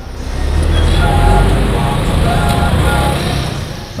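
Street traffic: a motor vehicle's deep engine rumble builds over the first second and eases off near the end as it passes close by.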